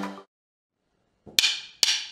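The tail of background music cuts off just after the start. After about a second of silence, two wooden drumsticks are clicked together twice, about half a second apart, as a count-in to a drum beat.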